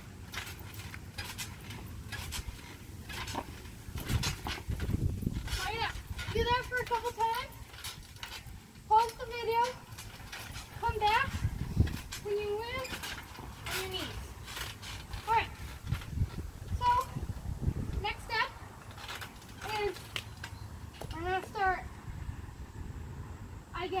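A trampoline being bounced on, with short thumps and low rumbles from the mat. Over it runs a steady string of short, pitched, voice-like calls.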